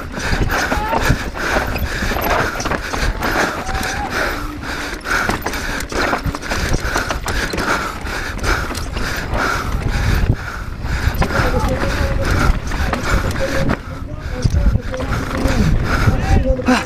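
Mondraker Dune R mountain bike clattering down a rocky trail, heard from a camera on the bike: chain slap and frame and suspension rattle over rocks, tyres on loose gravel, and wind rumbling on the microphone throughout.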